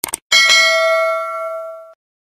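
Subscribe-animation sound effect: a quick double mouse click, then a notification-bell ding about a third of a second in that rings on with several overtones, fading slowly, and is cut off suddenly near the end.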